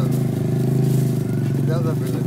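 An engine running steadily at idle close by, a constant low drone, with voices over it near the end.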